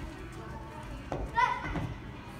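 A child's running footsteps on carpet, with a sharp knock about a second in and a short vocal call just after it.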